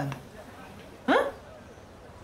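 A woman's short vocal exclamation about a second in, one quick sound sharply rising in pitch, like an indignant "eh?". The last word of speech trails off just before it.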